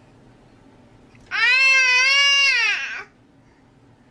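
A baby's single drawn-out cry, about a second and a half long, its pitch rising and then falling.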